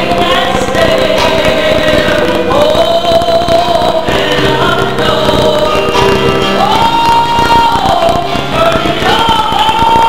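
Female soloist singing a gospel song with the church choir and keyboard accompaniment, holding long notes.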